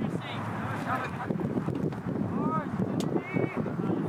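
Indistinct shouts and calls from soccer players and sideline spectators across the field, a few short calls rising and falling in pitch, over a steady hiss of wind on the microphone. A single sharp knock comes about three seconds in.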